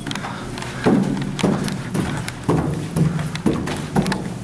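Footsteps climbing a stairwell's stairs, a steady run of steps at about two a second that starts about a second in.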